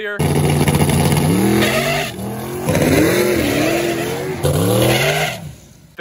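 Twin-turbo Camaro's engine revving in repeated surges as the car spins off the line, its pitch climbing, dropping and climbing again three times before the sound cuts off near the end.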